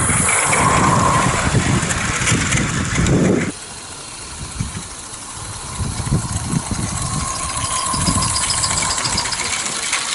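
Small live-steam garden-railway locomotive running past with a train of wooden wagons, its wheels clattering and knocking over the track. About three and a half seconds in the sound drops suddenly to a quieter, uneven clatter of the wagons rolling by.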